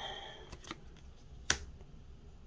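Trading cards being handled in the hands: a faint click, then a single sharp snap of a card about one and a half seconds in.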